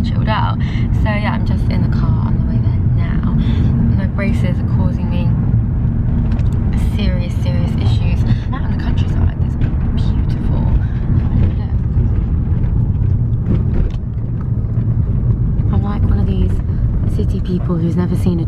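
Steady low road and engine rumble inside a moving car's cabin, heard from the back seat.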